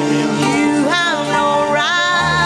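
A live worship band playing a slow song: a violin line with sliding notes over chords held on the keyboard.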